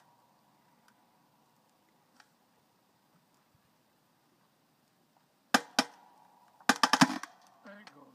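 Log cracking apart under the wedge of a manual hydraulic log splitter: after a few seconds of near quiet, a sharp pop about five and a half seconds in, another just after, then a quick run of cracks about a second later as the wood gives way.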